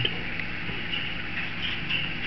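Steady low background hum with a few faint, brief high-pitched sounds scattered through it.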